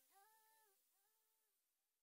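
Near silence: the very faint tail of a sped-up R&B song fading out, a held vocal note sounding twice and dying away.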